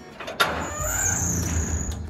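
Sheet-metal fence gate being unlatched: a sharp metallic click about half a second in, then a rumbling, scraping noise with a thin high squeal as the gate is worked.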